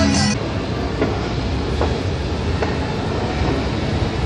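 Escalator running: a steady mechanical rumble with faint clicks about once a second.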